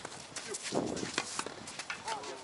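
Tennis rally sounds: a series of sharp knocks from the ball being struck by rackets and bouncing on the hard court, mixed with players' footsteps. A short vocal sound comes just before the middle.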